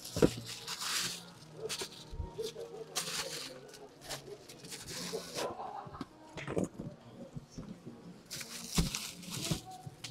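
Rustling and handling noise from a leather backpack and plastic-wrapped bags being moved and turned over, in several short bursts.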